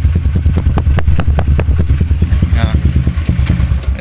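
Yamaha LC135 single-cylinder four-stroke engine, bored to 62 mm, idling through an Espada open exhaust whose silencer is packed tight with fibre and has no stopper; a loud, steady, even exhaust beat.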